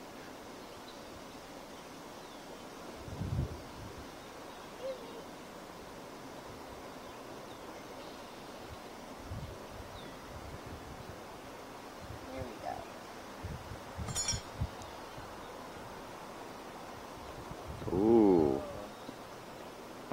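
A hive tool pries at wooden hive frames, making scattered low knocks and one sharp crack about two-thirds of the way through. A short drawn-out voiced sound rising and falling in pitch comes near the end and is the loudest thing.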